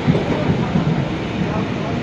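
Passenger train running along the line, heard from inside the car: a steady rumble of wheels on rails.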